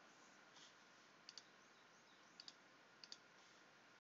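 Near silence with faint computer mouse clicks: three quick double-clicks about a second apart, over low hiss.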